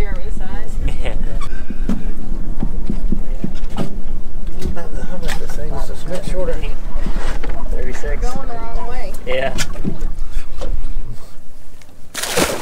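Wind buffeting the microphone on an open boat, a steady low rumble, with indistinct voices talking over it.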